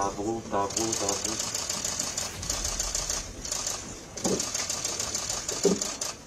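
Press camera shutters firing in rapid bursts of fast clicks, stopping and starting several times. A few brief words from a man's voice come at the start and near the end.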